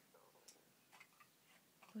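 Near silence, with a few faint, short clicks and a brief faint murmur.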